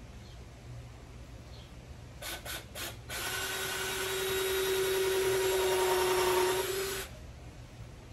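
Cordless drill driving a screw into the wooden sides of a box: three short trigger blips, then one steady run of about four seconds that stops abruptly.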